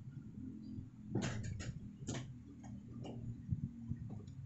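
Scattered light clicks and taps, about half a dozen, irregularly spaced, as objects are picked up and handled on a desk, over a faint low hum.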